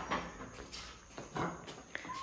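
A few light knocks and clinks of an aluminium ring mould being handled on a glass plate as a flan is turned out of it.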